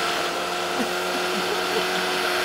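Electric food chopper running steadily, blending a lentil kofta mixture, a constant motor whine.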